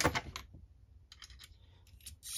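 A quick run of light clicks and clinks about a second in, and another click near the end: brass cartridge cases and small reloading tools being handled on the bench.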